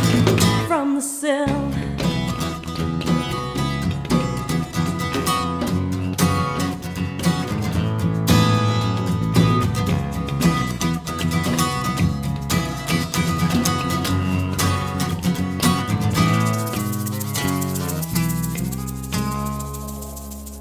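A band playing an instrumental passage of a rock song, with guitar and a shaker keeping a steady beat; it thins out and dies away near the end as the song finishes.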